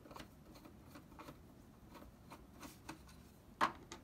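Faint small clicks and handling sounds of a Phillips screwdriver and fingers working at the metal hard-drive bracket of a PS4 as its retaining screw is taken out, with one sharper click a little before the end.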